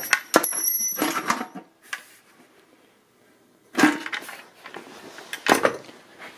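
Handling noise as scooter parts are moved about on a wooden workbench: scrapes and knocks in the first second and a half, near quiet for about two seconds, then another scrape and a couple of sharp knocks.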